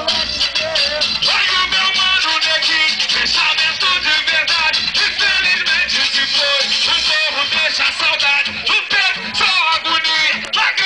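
Loud live Brazilian funk music with a voice over a steady low beat, running continuously.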